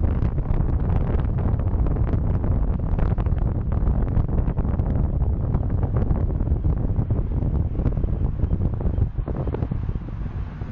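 Wind buffeting the microphone of a bicycle-mounted camera while riding, a loud, gusty rumble that eases slightly about nine seconds in.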